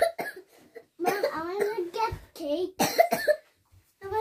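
A young girl coughing several times, with short wordless voice sounds between the coughs.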